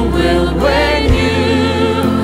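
Music: a choir and lead voices singing over low instrumental backing, with a sung line sliding upward about half a second in.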